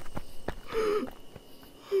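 A short, wheezy gasp in a comic cartoon-style voice, about a second in, falling in pitch. A few faint clicks come just before it.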